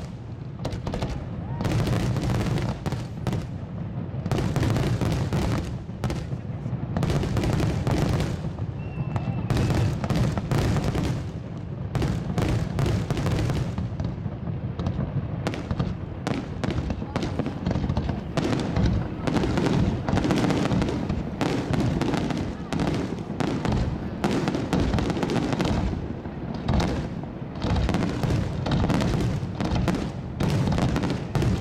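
Fireworks finale: aerial shells bursting in rapid succession, a dense, unbroken run of booms over a continuous low rumble.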